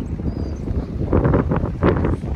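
Strong wind buffeting the microphone, growing gustier and louder in the second half.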